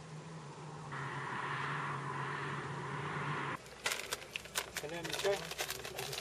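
Mountain bikes rolling over a gravel desert track, a steady hiss of tyres on loose ground over a low hum. Near the middle it switches abruptly to a clatter of sharp clicks and knocks from bikes and gear being handled, with voices coming in at the end.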